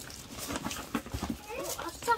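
A few faint knocks and rustles from handling, then a person's voice starting an exclamation near the end.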